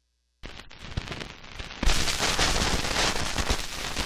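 Stylus running into the lead-in groove of a worn shellac 78 rpm record: a dense crackle and hiss of surface noise starts about half a second in and jumps much louder about two seconds in.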